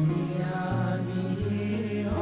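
Male inshad ensemble singing an Arabic nasheed, several voices holding sustained notes together over a low drone.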